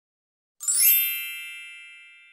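A single bright bell-like ding about half a second in, ringing with many high tones and fading away over about a second and a half.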